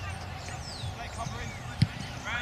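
A rugby ball kicked: one sharp thump near the end, over players shouting across the pitch.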